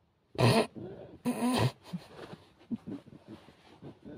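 Two loud, throaty non-speech vocal bursts from a man, about a second apart, followed by quieter short sounds.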